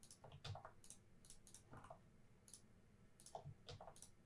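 Faint, irregular clicks of a computer mouse and keyboard keys.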